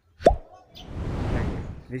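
Cartoon-style pop sound effect with a quick falling pitch about a quarter second in, followed by a whoosh that swells and fades over the next second and a half: the edited-in sound effects of an on-screen subscribe-button animation.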